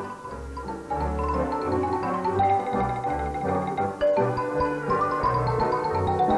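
Xylophone playing a lively Romanian folk tune in quick struck notes, accompanied by a folk band over a steadily pulsing bass.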